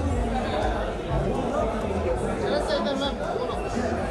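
Background chatter of many overlapping voices, over a steady low hum.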